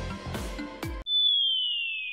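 Background music with a steady beat cuts off about a second in, replaced by a single high electronic tone that glides slowly down in pitch.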